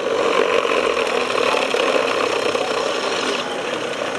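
A robot's electric drive motors and gearing running, with trade-show hall noise behind. The higher part of the noise stops shortly before the end.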